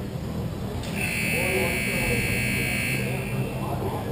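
Arena scoreboard buzzer sounding one steady, high-pitched tone for about two and a half seconds, starting about a second in.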